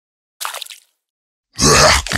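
A man's loud eating grunt near the end, with a short, fainter mouth sound about half a second in.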